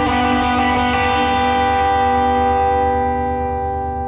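Live band's amplified electric guitar and bass holding a chord that rings out without drums, fading about three seconds in.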